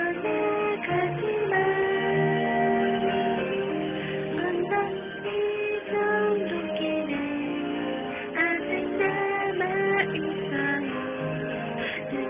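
A karaoke backing track with guitar, and a woman singing a slow ballad along with it.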